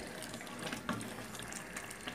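Pot of chopped red pepper paste (harissa) simmering, a soft steady hiss with a few faint clicks from a wooden spoon stirring it; the paste is cooking down until its liquid is absorbed.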